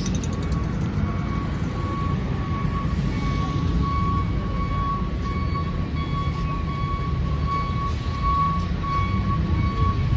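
Steady low rumble of city street traffic, with a thin high tone that comes and goes throughout.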